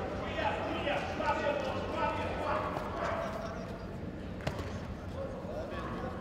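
People's voices in a sports hall, strongest over the first three seconds, with one sharp knock about four and a half seconds in.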